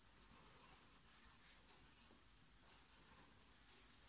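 Faint scratching of a 0.7 mm mechanical pencil writing cursive on ruled paper, in short irregular strokes.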